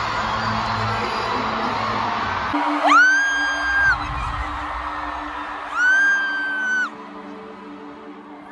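Stadium crowd noise over pre-show music, then, after an abrupt change, two long high-pitched screams of excitement close to the microphone, each held about a second and about three seconds apart.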